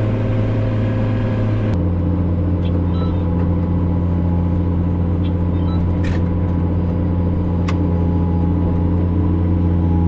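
Diesel engine of a Case IH Quadtrac tractor running steadily under load, a loud low drone that drops slightly in pitch about two seconds in.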